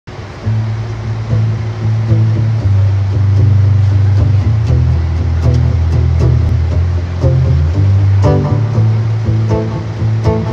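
Instrumental intro on an amplified acoustic guitar, with plucked notes over sustained low bass notes that change pitch every second or so.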